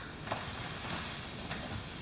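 Faint rustling and scuffing of two grapplers moving against each other on a foam mat during a live closed-guard exchange.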